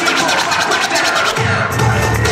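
A DJ's hip hop music with turntable scratching. A deep bass beat comes in about a second and a half in.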